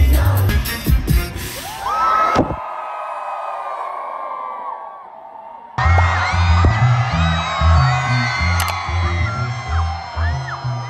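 Live festival concert music recorded from the crowd, loud and bass-heavy, with crowd whoops and cheers. About two and a half seconds in the bass drops away to a quieter stretch of held tones, then the loud beat comes back suddenly near the middle.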